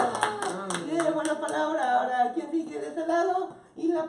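A small group clapping briefly over laughing and chattering voices; the claps die out after about a second and a half and the talk carries on.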